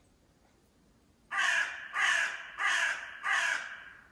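A crow cawing four times in quick succession, starting about a second in, each caw about half a second long and evenly spaced.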